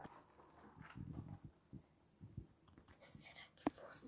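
Faint handling and rustling of a paper sticker book, soft scattered knocks and a brief rustle, with one sharp click near the end.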